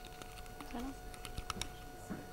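A sound system's steady electrical hum with a few sharp clicks about one and a half seconds in, typical of a microphone being handled at a podium.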